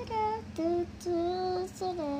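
A young girl singing a short wordless tune of a few held notes, the longest about midway.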